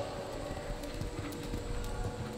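Hoofbeats of a horse loping on soft arena dirt, with a steady hum underneath.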